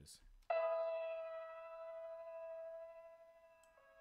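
Processed piano texture, a copy of the piano part pitched up a semitone, playing back: one bell-like chord struck about half a second in rings out and slowly fades.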